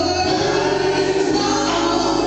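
Live gospel song: women's voices singing with group harmony over instrumental accompaniment, recorded from the congregation.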